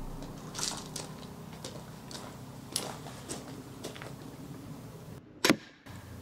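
Steambow Stinger repeating crossbow firing a single bolt about five and a half seconds in: one sharp snap. Before it there are a few faint clicks.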